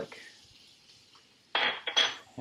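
A faint hiss of oil heating in a stainless sauté pan. About one and a half seconds in comes a short scraping rattle, then a sharp, ringing metal clink of a utensil or dish knocking against cookware as garlic is tipped into the pan.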